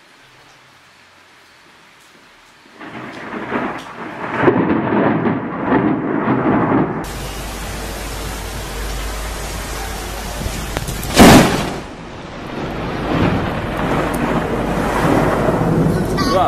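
Thunder rumbling, then steady heavy rain. About eleven seconds in comes a single sudden, very loud thunderclap from a close lightning strike, with rain and rumbling thunder after it.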